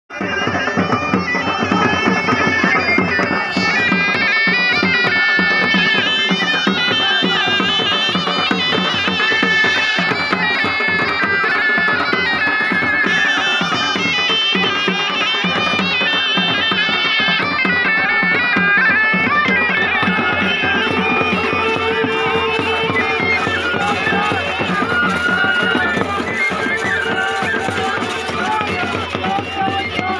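Loud outdoor band music: a high, wavering wind-instrument melody over a steady held drone, with crowd noise beneath.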